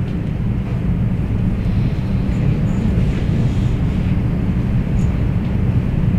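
Steady low rumble of room background noise with no speech, even in level throughout.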